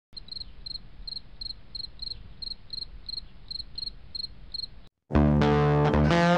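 An insect chirping: a steady run of short high chirps, about three a second. It stops just before five seconds in, and a much louder guitar music track starts.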